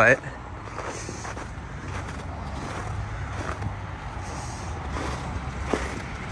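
A low, steady background rumble that swells slightly around the middle.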